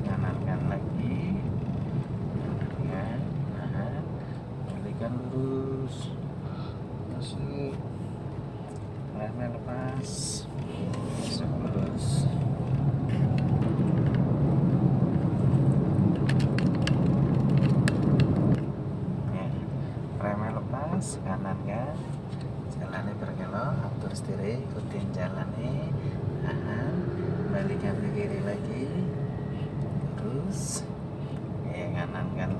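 Inside the cabin of a moving automatic car: steady engine and road noise. It grows louder from about twelve seconds in and drops off suddenly about eighteen seconds in.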